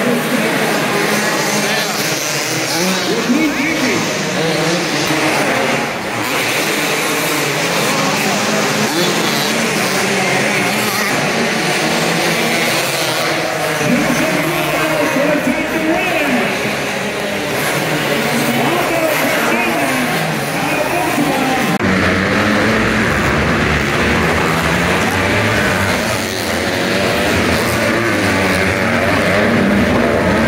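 Several motocross bikes' engines revving up and down as they race round a dirt arenacross track, echoing in the indoor arena, with crowd voices underneath. About 22 s in, a deeper rumble joins the engines.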